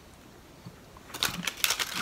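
Foil chocolate-bar wrapper crinkling in a quick run of small crackles, starting about a second in.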